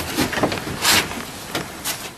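Heavy carved myrtlewood pieces being shifted into place on a wooden kiln shelf: wood scraping and knocking against wood. The loudest scrape comes about a second in and a shorter one near the end.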